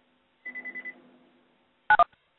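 A brief electronic beep: a steady high tone with a pulsing level for about half a second, followed near the end by a short sharp click.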